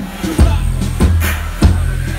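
Loud live band music: an acoustic drum kit hitting a steady beat, about two hits a second, over a deep, sustained bass line.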